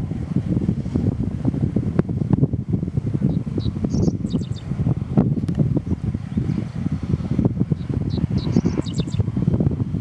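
Wind buffeting the microphone in a gusty low rumble, with a bird singing a short high phrase twice, a few seconds apart.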